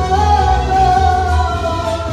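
A woman singing into a microphone through PA speakers, holding one long note that sinks slightly in pitch, over an accompaniment with a steady bass.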